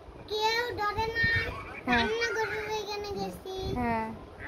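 A young boy singing in a high voice: two long phrases of held notes, then a few shorter ones near the end.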